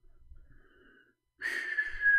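A person whistling one breathy, held note, starting about one and a half seconds in and sagging slightly in pitch.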